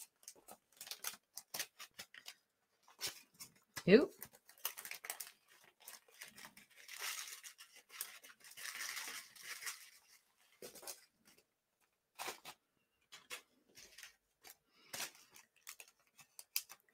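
Clear cellophane bag crinkling and rustling in the hands as small plastic shaker sequins are dropped into it, with scattered light clicks throughout and a longer rustle about seven to ten seconds in.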